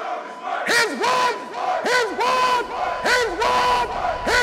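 A group of men's voices shouting short calls in unison, over and over. Each call arches up and falls in pitch.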